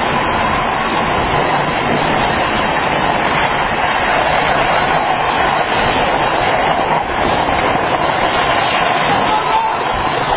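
Steady loud rushing noise of a fast downhill drift-trike ride: wind on the microphone and hard trike wheels rolling and sliding on asphalt.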